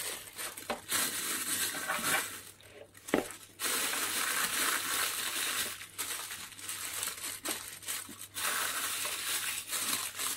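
Plastic freezer bag crinkling and rustling as hands press down on the sliced porcini mushrooms inside it, with a few short pauses. The bag is being flattened so the mushrooms lie compacted and take up less space.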